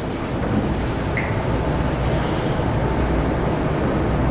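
Steady rushing hiss and low hum of room tone picked up by the meeting-room microphones, with one brief faint chirp about a second in.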